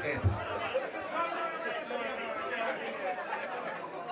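Crowd chatter: many voices talking over one another, with no music playing.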